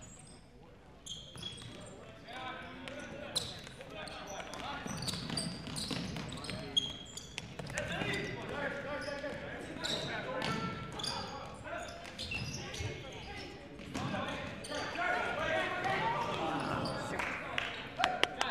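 Indoor futsal play on a hardwood gym floor: indistinct shouting and calling from players and spectators, echoing in the hall, with sharp thuds of the ball being kicked. The clearest thuds come about three and a half and seven seconds in.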